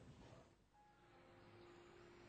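Near silence: faint background noise with a few faint steady tones.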